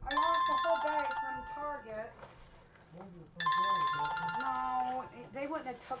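Mobile phone ringtone playing a melody, the same phrase starting suddenly at the beginning and again about three and a half seconds later.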